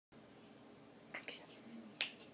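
Quiet room tone with a brief whisper of a few short hissy syllables a little after a second in.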